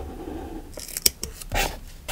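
A pen scratching steadily along a plastic ruler on paper, stopping less than a second in. Then a few sharp clicks and short rustles as the ruler and pen are set down and tweezers lift a paper sticker, the loudest click about a second in.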